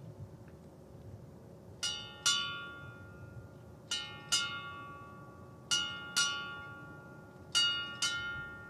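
A ship's bell struck in four pairs, eight strokes in all, each ringing out and fading: the bells of Navy departure honors for a flag officer being piped over the side.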